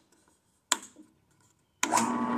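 Harbor Freight drill press being switched on: a sharp click from the paddle switch, then near the end the motor starts and runs with a steady, fairly quiet hum.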